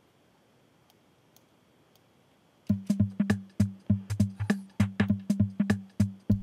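Near silence, then about two and a half seconds in an electronic drum-machine beat starts playing: short, punchy hits with a low pitched thump, about four a second.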